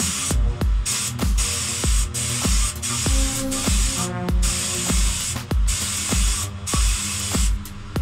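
Gravity-feed spray gun hissing as it sprays paint, in long bursts broken by short pauses, over background music with a steady beat.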